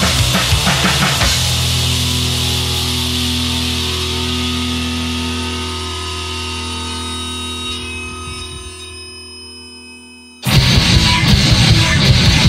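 Recorded punk rock song ending: the band stops and a final held chord rings out, fading slowly for about nine seconds, then the next loud rock track starts suddenly near the end.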